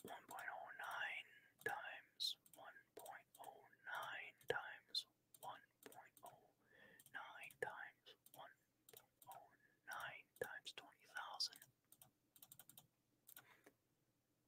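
A man whispering and muttering quietly under his breath, with scattered clicks of computer keys being typed as he works out a calculation.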